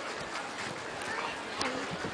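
Faint voices of people chatting in the open, with a couple of light knocks, the clearest one about one and a half seconds in.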